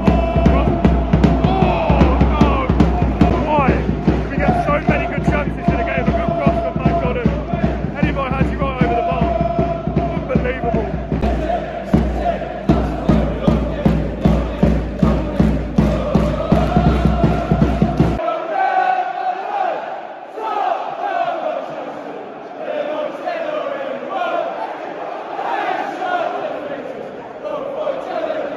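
Football crowd in a stadium singing a chant together over a steady, evenly repeated beat. The beat stops suddenly about two-thirds of the way through, and the singing carries on.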